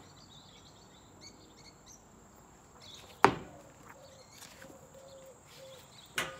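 Quiet outdoor background with faint bird chirps, broken by a single sharp knock about three seconds in.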